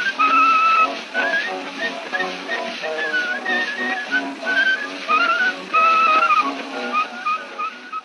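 A man whistling a lively melody with short sliding notes over instrumental accompaniment, on an early 1890s acoustic phonograph recording with steady surface hiss.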